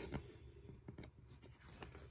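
Faint rustling and soft taps of a paperback picture book being handled and its cover flipped over, slightly louder right at the start.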